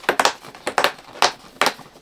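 Cardboard door of an advent calendar being pried open with the fingers: about half a dozen short, sharp crackles and snaps of card.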